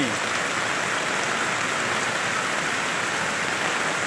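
Steady, even rush of heavy rain and fast-flowing floodwater, with no separate events standing out.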